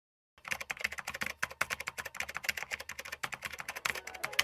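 Computer keyboard typing, a quick, uneven run of key clicks at about ten a second, starting about half a second in and played along with on-screen text being typed out.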